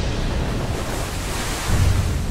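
Storm-sea sound effect: waves crashing and wind, a dense rushing roar, swelling into a deep low hit near the end.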